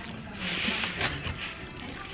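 A metal spoon stirring a wet ground beef and spinach mixture in a disposable aluminium foil pan: soft squishing and scraping, with a sharp click of the spoon against the foil about a second in.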